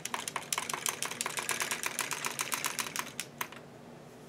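Tru-Knit circular sock machine being hand-cranked through three quarters of a round, clicking rapidly and evenly at about nine clicks a second. The clicking stops about three and a half seconds in.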